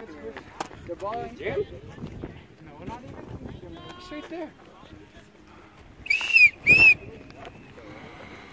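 Two short, loud whistle blasts about six seconds in, each a brief rise-and-fall tone. Players' voices murmur in the background.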